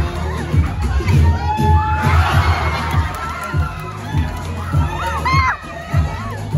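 Crowd cheering, whooping and shouting over loud dance music with a heavy bass beat. The cheering swells to a peak about two seconds in.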